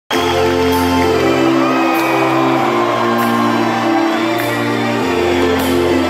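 Live rock band's keyboard playing held chords that change about every second and a quarter, with a crowd cheering and shouting over it, in a big echoing hall.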